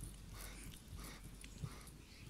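Dog digging in loose sandy soil with its head down in the hole: faint, irregular scratching.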